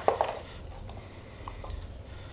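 Quiet low hum of room tone, with a couple of faint short clicks about one and a half seconds in.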